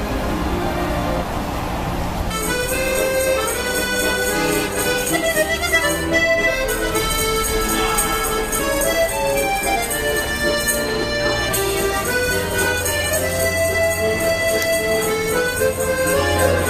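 Accordion playing a tune in held chords and melody, starting about two seconds in after a short stretch of noisy street ambience.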